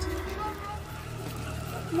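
A low, steady droning hum from the TV episode's soundtrack, stepping up in pitch about a second in, with a few faint, brief higher tones early on.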